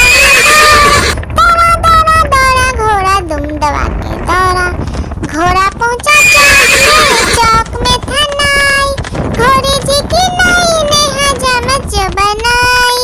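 Horse whinnying and neighing over and over, several long quavering, mostly falling whinnies one after another. The breathier, louder ones come at the start and about six seconds in.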